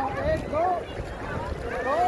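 Several people's voices talking and calling over one another, indistinct, with wind rumbling on the microphone.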